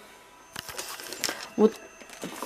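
Clicks and crackling rustle of a clear plastic blister pack being picked up and handled, with a couple of sharper taps, then a short spoken word near the end.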